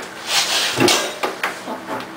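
A closet door being handled and opened: a rushing scrape lasting about a second, followed by a couple of light knocks.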